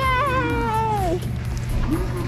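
A drawn-out vocal cry lasting about a second, rising and then sliding down in pitch like a disappointed 'awww' at a near-miss on the claw machine, over steady background music.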